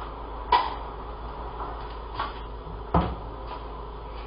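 Household knocks in a kitchen: a few short sharp bangs, the loudest about half a second in and others about two and three seconds in, over a steady low hum.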